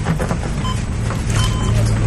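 A steady low hum with a few short electronic beeps from medical equipment, one around the middle and a couple more near the end.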